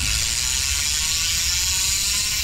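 Mountain bike rear hub freehub buzzing as the rear wheel spins freely, a fast steady ratcheting of the hub's pawls.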